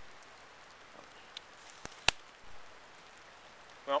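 Light drizzle falling: a faint steady hiss with a few scattered sharp ticks, the loudest about two seconds in.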